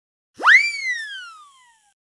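Cartoon sound effect: one pitched swoop that shoots up quickly, then glides slowly down and fades, marking an item hopping into a shopping cart.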